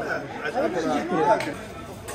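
People talking: chatter of voices with no clear single speaker.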